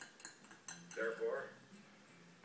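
A few light clinks of a glass on a desk tray, then a man's voice at about a second in.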